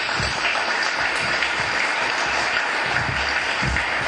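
Audience applauding: dense, steady clapping from a roomful of people.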